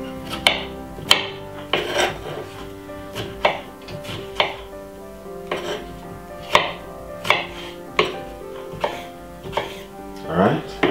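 Kitchen knife chopping cucumber on a bamboo cutting board, with irregular cuts roughly once a second. Steady background music plays under it.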